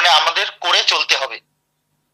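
A man speaking, the voice carrying the thin, phone-like sound of an online call; it stops about a second and a half in and dead silence follows.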